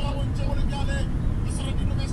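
Steady low engine and road rumble of a moving truck, heard from inside the cab.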